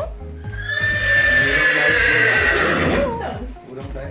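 A horse neighing: one long whinny of about three seconds, its pitch falling slowly.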